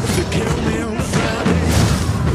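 Action-trailer score with heavy booming hits, overlaid with sharp fight impacts about a second apart.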